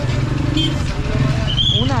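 Busy street traffic: the engines of passing vehicles, among them a motorcycle and a small van close by, make a steady low rumble under voices of people nearby.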